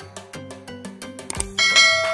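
Rhythmic intro music, then a loud bright bell chime strikes about three-quarters of the way through and rings on: the notification 'ding' sound effect of an animated subscribe button.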